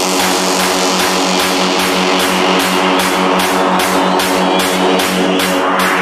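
Electro house dance music in a bass-less build-up: a steadily pulsing synth chord with a noise sweep that grows brighter toward the end.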